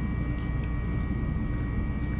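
Juki DU-1181N industrial walking-foot sewing machine running steadily, a low mechanical drone.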